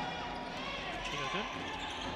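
Faint gymnasium court sound during a basketball game: a basketball being dribbled on the hardwood floor, with faint distant voices from the court.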